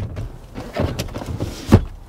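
Rear centre armrest of a car's back seat being handled: a sharp plastic click as its cup holder lid snaps shut at the start, light rubbing, then a dull thump near the end as the armrest folds up into the seat back.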